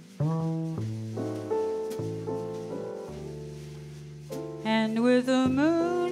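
Live jazz: a keyboard piano plays sustained chords over a double bass line, with no voice at first. A woman's singing voice comes back in about four and a half seconds in and grows louder.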